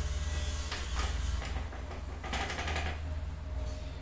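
Hand-crank winch on a bow-drawing jig being turned to let the bow back down, its gears giving a fast clatter of clicks in two spells. A steady low hum runs underneath.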